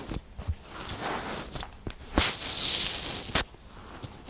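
Kinetic sand squeezed and pressed by hand around a microphone buried in it: soft grainy crunching with a few sharp clicks, the loudest about two seconds in and again about a second later, with a brief hiss between them.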